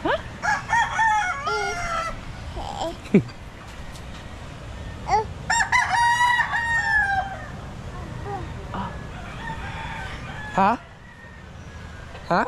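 Rooster crowing twice, each crow a long call of about two seconds that sags in pitch at the end, with a few shorter cries in between.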